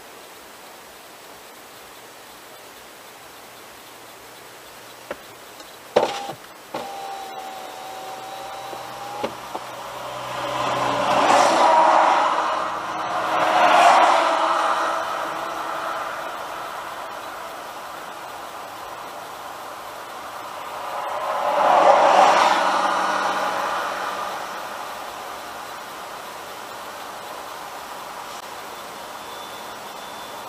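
Steady road and tyre noise of a car driving along a highway behind a truck, heard from inside. A few sharp knocks come about six seconds in. Three broad rushes of passing traffic each swell and fade over two to three seconds, two close together in the middle and one about two-thirds through.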